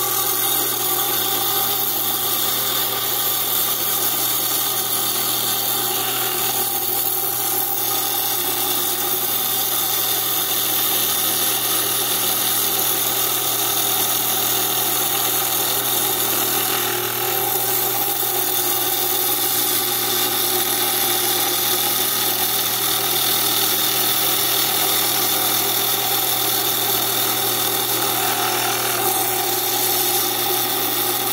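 Lapidary trim saw running steadily, its diamond blade grinding through an agate held against it in the coolant. There is a constant motor hum under the cutting noise.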